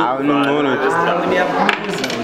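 A young male voice making a drawn-out vocal exclamation without clear words, its pitch gliding, with a short click near the end.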